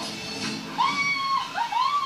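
Soundtrack of an animated TV promo playing through a television speaker: music, with two high sliding tones in the second half. The first holds and then drops; the second, shorter one rises and falls.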